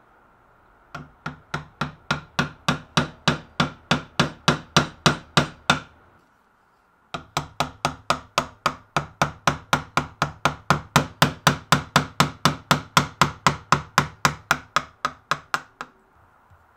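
A chisel struck with a mallet in quick, even taps, about three a second, chopping out the waste between drilled holes in a wooden guitar neck. The tapping comes in two runs with a short pause about six seconds in.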